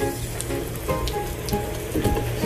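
Water from a garden hose spraying and splattering on a wet wooden deck, with background music playing over it.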